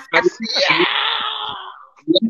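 A long, breathy, drawn-out vocal cry, like a wheezing laugh, lasting about a second and fading away, after a couple of short spoken syllables.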